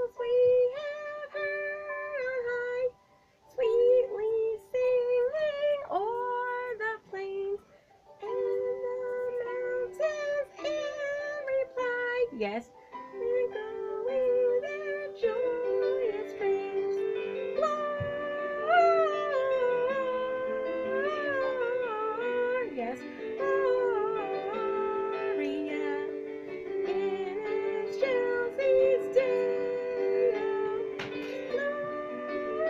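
A woman singing a Christmas song over recorded instrumental backing music, her voice sliding between notes above steady held chords, with brief pauses early on.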